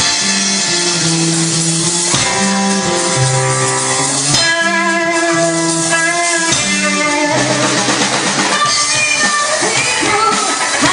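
Live rock band playing an instrumental passage: electric guitar, bass guitar and drum kit, with held notes that change every half second to a second.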